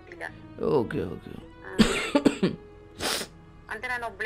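A person coughing and clearing the throat: a falling voiced sound about half a second in, then a cluster of loud coughs around two seconds in and one more just after three seconds, over faint background music.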